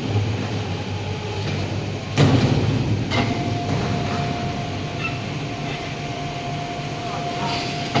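Overhead crane hoist lowering a suspended transformer: a steady low machinery hum with a metallic knock about two seconds in, then a steady whine from about three seconds in as the hoist runs.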